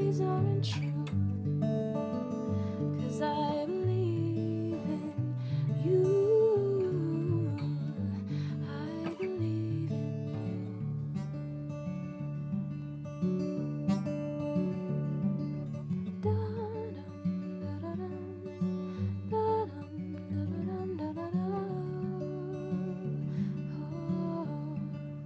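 Acoustic guitar playing slow chords, with a woman's voice carrying a soft melody over them at intervals.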